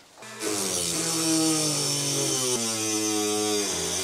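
Rotary tool (Dremel) spinning up and running with a steady whine and a high hiss while grinding off a stuck hose barb in a through-hull fitting. Its pitch sags under load near the end, then recovers.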